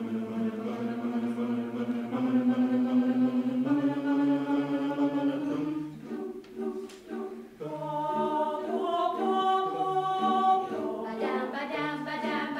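Mixed chamber choir singing a cappella: held chords that step up in pitch twice in the first four seconds, a brief quieter break about six seconds in, then fuller chords with the higher voices on top.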